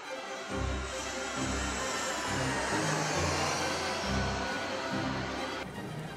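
Steady rushing noise of a passenger jet landing, laid over background music with low, held bass notes; the rushing drops away shortly before the end.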